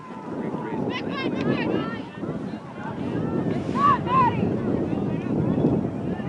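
Wind buffeting the microphone on an open sports field, with distant short, high-pitched shouts and calls from players across the pitch, two louder calls about four seconds in.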